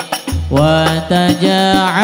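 Hadroh ensemble playing Islamic devotional music (shalawat). A male voice holds a drawn-out, ornamented sung line over hand-drum strokes and a deep bass-drum boom.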